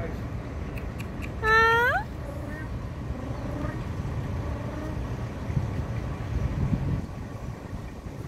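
A feral cat gives one loud meow, rising in pitch, about a second and a half in, followed by a few fainter, shorter calls, over a steady low background rumble.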